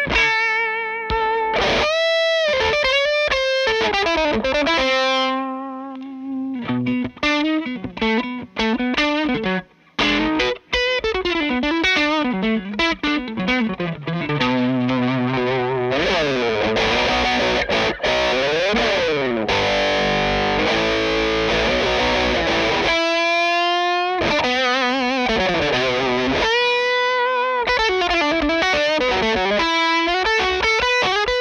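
Fender Telecaster played through the Hello Sailor Effects Free Range drive pedal into a Victory DP40 amp: a distorted lead line of single notes, with string bends and wide vibrato on the held notes. The playing stops briefly about ten seconds in, and there is a thicker stretch of chords in the middle.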